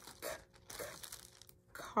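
Faint crinkling of a plastic zip-top bag as it is handled and set down on a table.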